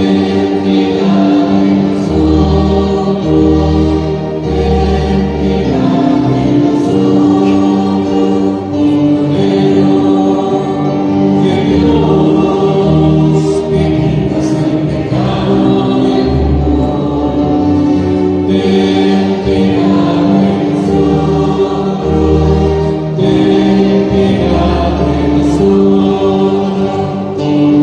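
Church choir singing a hymn with low bass accompaniment. The singing is loud and continuous, with long held notes.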